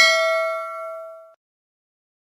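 A bell ding sound effect for the notification-bell click: one struck ring that fades out over about a second and a half.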